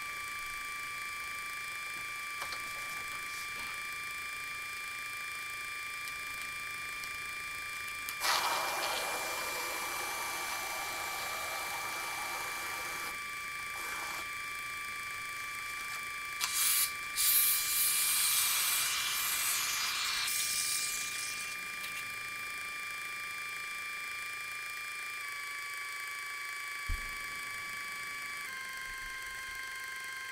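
Aerosol spray can hissing as it sprays adhesive onto a socked foot: one hiss starting about eight seconds in and lasting several seconds, then a louder, longer hiss a little past the middle.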